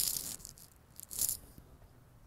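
Two brief high-pitched rattles about a second apart, the first right at the start and the second slightly louder.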